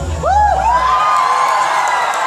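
Audience cheering and whooping, with a few high whoops near the start, as the dance music's bass cuts off about a second in.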